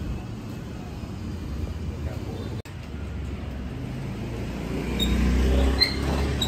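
Petrol engine of a Takyo TK65 branch chipper running steadily with a low hum, growing louder about five seconds in.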